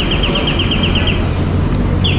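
A vehicle engine idling with a steady low hum, joined by a rapid high-pitched pulsing tone, about nine pulses a second, that stops a little over a second in.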